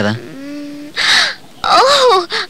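A woman's held, steady hummed "hmm", followed about a second in by a short breathy "aah" exclamation.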